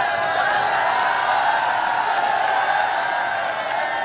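A large outdoor crowd cheering and shouting, many voices at once in a steady din.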